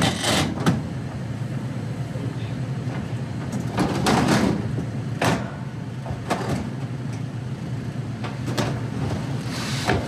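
Sheet-metal bottom panels of a refrigerated display case being slid and set back into place, giving scattered scrapes and knocks, over the steady hum of the case's running evaporator fans.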